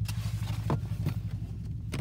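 Car engine humming steadily as the car is driven, heard from inside the cabin, with a single faint click a little under a second in.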